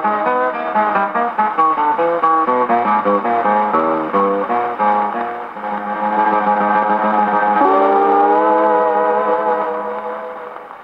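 Hawaiian steel guitar solo with guitar accompaniment played from a 1939 shellac 78 rpm record on an acoustic Victrola gramophone, the sound thin and narrow. A run of quick notes gives way to a held chord that slides up shortly after the middle and rings on as the closing chord.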